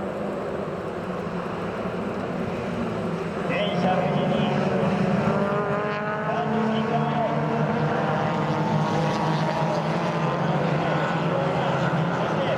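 A pack of Mazda Roadster race cars racing past together, many four-cylinder engines revving over each other with rising pitch as they pull through the gears. The sound swells about four seconds in as the bulk of the field arrives and stays loud.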